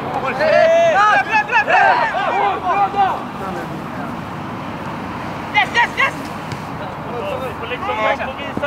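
Men shouting calls on a football pitch during play: a run of loud shouts in the first three seconds, two short shouts a little past halfway, and more near the end, over a steady background noise.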